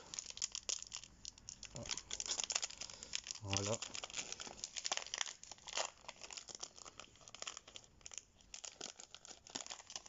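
Foil wrapper of a Pokémon card booster pack being torn open and crinkled by hand, a continuous run of small crackles and rustles.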